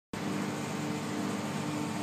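Steady machine hum with a few held low tones and a hiss of air noise.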